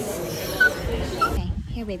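A small senior pug-mix dog whimpering, two short high squeaks over a background hubbub of voices. A woman's voice begins calling near the end.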